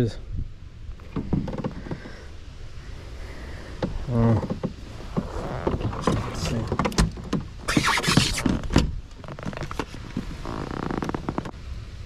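Handling noise in a plastic fishing kayak as a landed largemouth bass is moved onto a measuring board: a run of knocks, clicks and scrapes. About eight seconds in comes a brief, louder rushing noise.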